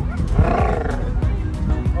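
A short growling roar lasting well under a second, starting a moment in, over steady background music.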